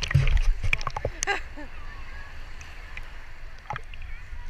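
Shallow ocean surf washing around a camera at the waterline, with water sloshing and buffeting against the housing. It is loudest in the first second, then settles into a steady wash of small waves.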